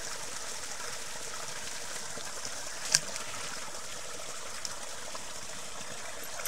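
A small brook spilling out of a culvert pipe and running over a shallow bed: a steady rush of water. One sharp click about halfway through stands out above it.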